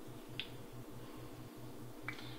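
Faint room tone with a steady low hum, and a single small click about half a second in.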